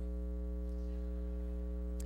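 Steady low electrical hum, like mains hum in a sound system, running evenly with nothing else over it.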